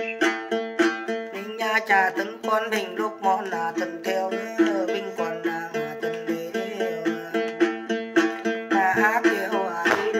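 Đàn tính, the long-necked gourd lute of Then ritual, plucked in a quick repeating figure, with a voice singing Then over it in places.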